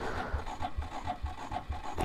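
Honda Monkey 125's single-cylinder engine being cranked slowly by its electric starter, an even rasping turnover about four or five times a second that never fires: the battery has been run down by a heated vest.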